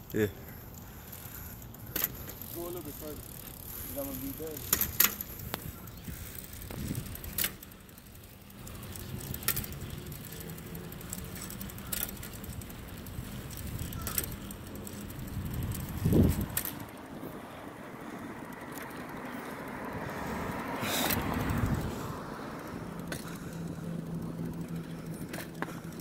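Elite 20-inch BMX bike rolling over asphalt during wheelie attempts, with sharp clicks and knocks every few seconds. Two louder swells of rushing noise come in the second half.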